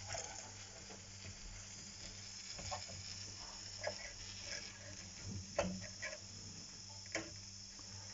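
A few faint, scattered clicks and taps of small metal parts being handled as a drive belt is fitted by hand to a Wilesco D101 toy steam engine and its line shaft. A steady faint hiss runs underneath.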